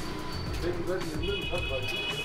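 Low murmur of background voices with faint music. A high, steady electronic-sounding tone comes in about halfway through.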